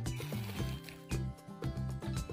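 Background music with bass notes and a steady beat about twice a second.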